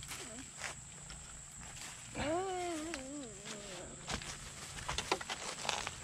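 A drawn-out wordless vocal call, about a second and a half long, rising and then wavering down in pitch. Near the end come scattered crackles and clicks of dry leaves and twigs being trodden through or handled.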